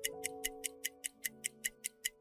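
Ticking countdown-timer sound effect, about five quick, even ticks a second, over soft background music of held notes that change chord just after the start.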